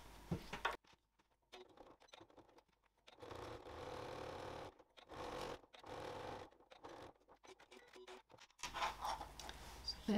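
Domestic electric sewing machine running in several short stretches as it topstitches fabric along a zip edge.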